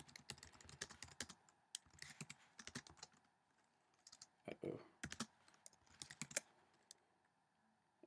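Faint typing on a computer keyboard: irregular runs of keystroke clicks with a short pause around the middle, stopping shortly before the end.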